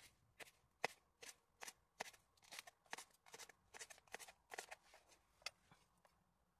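Knife slicing green pepper on a board: a run of short, crisp taps, about three a second.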